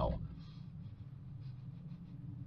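Faint sniffing at the mouth of an opened soda can, over a low steady hum.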